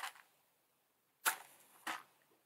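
Match struck on a matchbox: two short scratchy scrapes, one just after a second in and another near the end.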